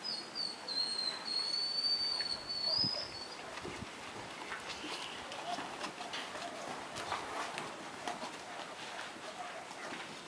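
A Belgian Malinois puppy whining in a long, high, wavering whine through the first few seconds, then scuffling and footsteps on sandy ground as it tugs and trots along.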